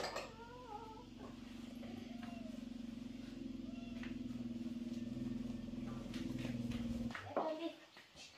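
A cat gives a few short wavering meows about a second in, over a steady low droning hum that grows slightly louder and cuts off abruptly about seven seconds in.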